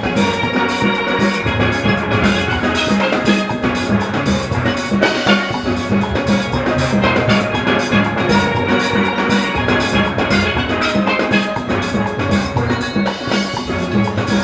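A full steel band playing a calypso tune: many steel pans, from high tenors to bass pans, over a drum kit and percussion keeping a steady beat.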